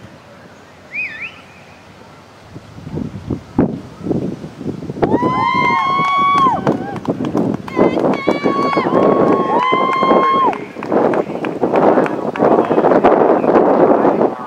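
Several people's voices calling out in long held shouts, overlapping, starting about a third of the way in and repeated twice more before the last few seconds.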